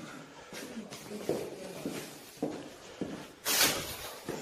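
Faint footsteps and shuffling on a hard floor, with a short, loud rustling noise about three and a half seconds in.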